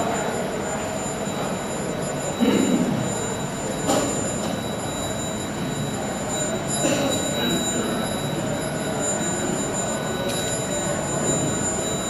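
Steady background noise of a crowded hall, with faint murmuring and a thin, high, steady whine. A brief louder sound comes about two and a half seconds in, and a sharp click follows about a second later.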